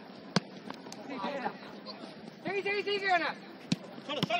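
Two sharp thuds of a football being kicked on artificial turf, one about half a second in and another near the end, with a player's long shout in between.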